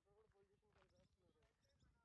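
Near silence: the soundtrack drops out almost completely.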